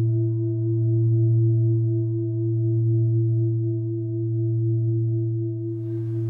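Intro music: a sustained drone of several steady tones layered together, with a slow pulsing waver. A faint hiss comes in near the end.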